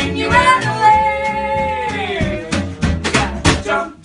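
A band playing and singing: a singer holds one long note that bends down as it ends, then the accompaniment carries on in a steady rhythm with a bass line underneath.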